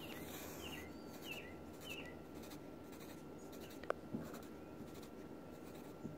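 Graphite pencil on paper, faint short strokes and dots as electrons are drawn onto a diagram, with a sharp tick about four seconds in.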